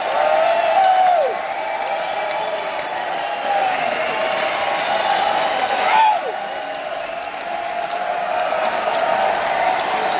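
Large concert crowd clapping and cheering, with several voices whooping in calls that glide up and down in pitch.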